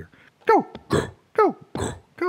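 A man making wordless vocal sounds: two short calls that drop steeply in pitch, each followed by a breathy hissing burst.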